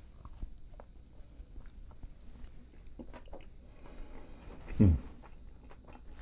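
A person biting into and chewing a soft flour-tortilla taco: faint, irregular wet mouth clicks. Near the end comes a short hum of enjoyment, "mm".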